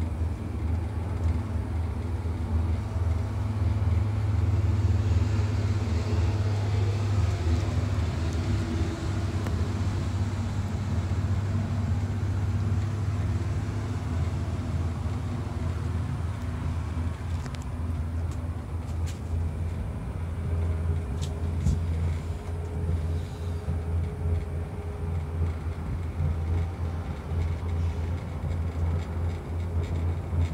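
Steady low rumble inside a moving cable-car gondola running along its haul rope, with a few faint clicks about two-thirds of the way through.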